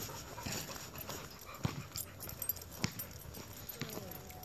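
Scattered light clicks and taps of walking on asphalt with a boxer-mix dog close at heel, over a low outdoor hiss.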